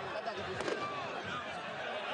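Several people talking over one another close by, in overlapping chatter. A brief sharp knock cuts in about two-thirds of a second in.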